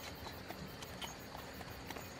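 Faint, regular clip-clop of horse hooves over a low, even background noise: the ambience of a horse-drawn carriage on the move.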